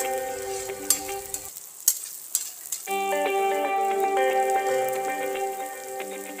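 Sliced onions and spices sizzling in hot oil in a wok, with a metal spatula clicking against the pan twice in the first two seconds. Background music with held notes plays over it, breaking off for about a second and a half near two seconds in.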